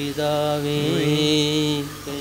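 A man chanting one long held note of a sung liturgical prayer, with a slight waver in pitch about halfway through.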